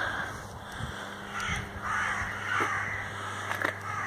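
Crows cawing.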